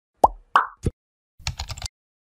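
Three quick pop sound effects in the first second, then about half a second of rapid keyboard-typing clicks from an animated search-bar intro.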